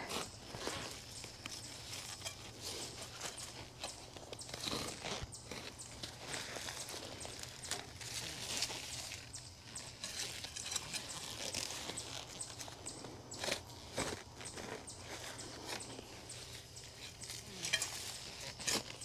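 A spade digging in dry garden soil to widen a planting hole: faint, irregular crunches and scrapes as the blade is driven in and soil is levered out, with a few sharper strikes along the way.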